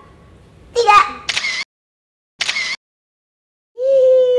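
Smartphone camera shutter sound, two identical clicks about a second apart with dead silence between them, as photos are taken. A brief voice sounds just before the first click.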